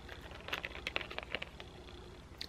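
Light scattered clicks and taps from a cardboard earring card and its acrylic earrings being handled in the fingers.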